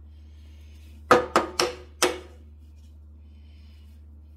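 Four sharp percussive knocks with a short ring, roughly a quarter-second apart, the first the loudest, over a low steady hum.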